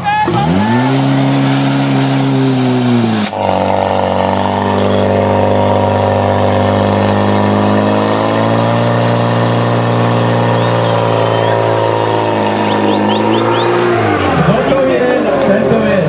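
Portable petrol fire pump engine revving up and running at full throttle while the pump drives water through the attack hoses, then slowing and winding down near the end. A loud hiss sits over the engine for the first few seconds.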